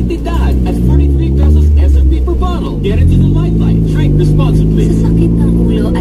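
Honda Civic engine and exhaust heard from inside the cabin while driving: the pitch climbs as it accelerates, falls and climbs again about three seconds in, then holds a steady drone. Radio talk and music play faintly underneath.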